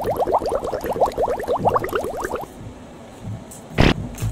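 Shoelace being pulled out through a sneaker's eyelets: a rapid run of short rising squeaks, about eight a second, that stops about two and a half seconds in. A sharp click near the end.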